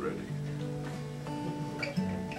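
Acoustic guitar in an open tuning, a chord shape fretted with the open strings left ringing. Notes sustain, with new notes picked about a third of a second in and again a little over a second in.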